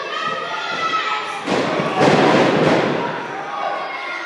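A heavy thud on a wrestling ring's canvas about a second and a half in, its sound filling a large hall, amid the shouting voices of spectators.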